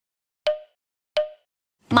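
Two short, identical pop sound effects about 0.7 s apart, each a sharp click with a brief pitched tone, in otherwise dead silence. Near the end a woman loudly starts to speak.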